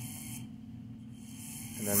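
A low, steady electrical hum under faint hiss, with no distinct mechanical event.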